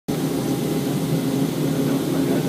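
Montenvers electric rack railway train running downhill, a steady mechanical drone with an even low hum.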